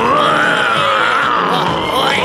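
A cartoon character's long, strained cry, rising and then falling in pitch, over background music.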